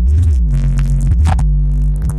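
Loud electronic music played through a large stacked outdoor speaker system during a sound check: a deep synth bass note that bends in pitch just after the start and then holds steady, with a short hit about a second and a half in.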